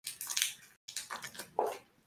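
Short bursts of hissy, rustling noise from a call participant's microphone, cutting in and out to silence between bursts.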